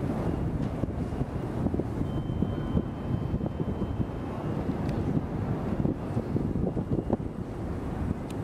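Wind buffeting an open microphone: a low, gusty rumble that rises and falls unevenly.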